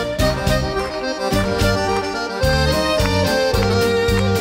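Live band playing a folk-pop song intro, with a chromatic button accordion carrying the melody over a steady beat from bass and drums.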